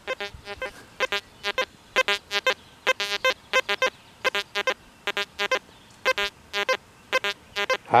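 XP Deus 2 metal detector sounding from its external speaker: a rapid series of short, clear beeps, often in pairs, as the coil sweeps back and forth over the test targets. The high tone signals the silver dime.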